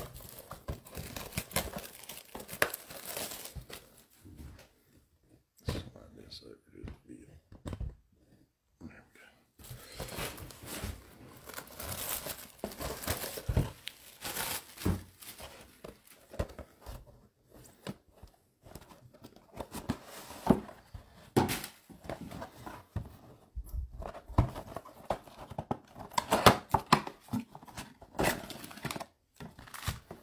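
Plastic wrap being torn off a trading-card box and crinkled, along with its cardboard being opened, in irregular bursts of tearing and crinkling.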